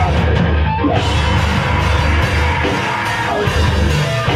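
Hardcore punk band playing live, loud and dense: distorted electric guitar and drum kit.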